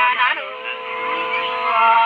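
Unaccompanied women's voices singing sli, the Lạng Sơn folk song, in long drawn-out held notes: a short glide at the start, one long held note, then a step to a new note near the end.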